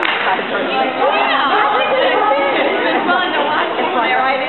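Crowd chatter: many voices talking at once, with the echo of a large indoor hall.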